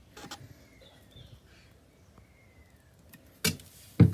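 Light handling clicks from an empty plastic oil bottle, then a single sharp knock about three and a half seconds in, against a quiet background.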